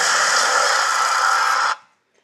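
Movie-trailer sound effect: a loud burst of noise, like something lunging and grabbing someone, that starts sharply and cuts off suddenly after less than two seconds into silence as the picture goes black.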